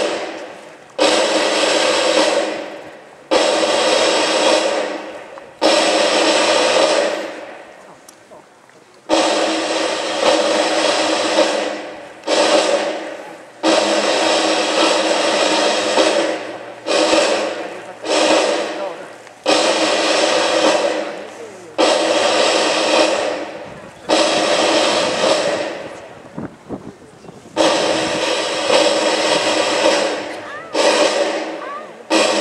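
A bell tolling: about a dozen strikes, each hitting sharply and ringing out over a second or two with a steady pitch, at uneven intervals of roughly two seconds.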